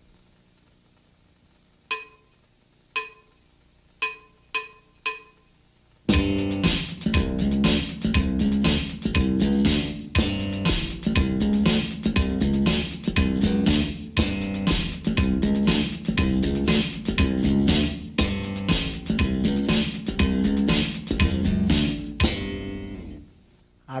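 Five short clicks counting in, the last three quicker, then an electric bass played slap-style: thumb slaps and popped strings in a fast, busy repeating pattern for about seventeen seconds, ringing off near the end.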